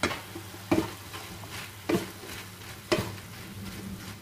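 Wooden spatula stirring diced vegetables and fresh spinach in a frying pan, knocking against the pan about once a second over a light sizzle of frying.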